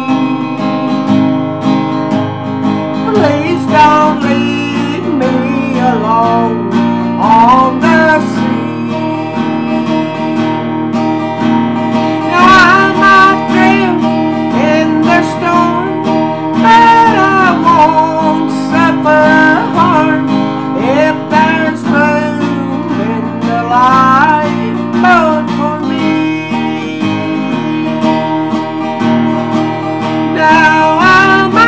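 Music: an acoustic guitar strumming chords, with a wavering melody line over it.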